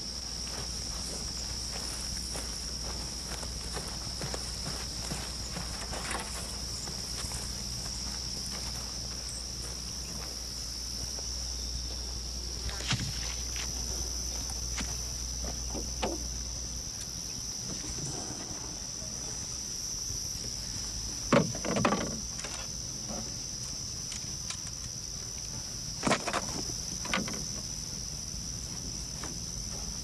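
Crickets singing in a steady, unbroken high-pitched chorus, with a few scattered knocks and thumps, the loudest about two-thirds of the way through.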